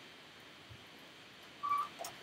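Quiet room tone, broken about one and a half seconds in by a single short, steady electronic beep.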